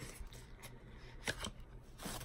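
A few faint clicks and rustles as a ColourPop eyeshadow palette is handled and taken out of its packaging.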